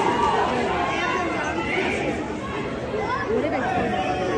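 Chatter of many overlapping voices from a crowd of spectators in a large hall, none standing out clearly.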